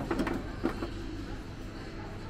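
A few light clicks and taps in the first half second or so as gas-hob burner caps are handled and set in place, then a steady low background hum.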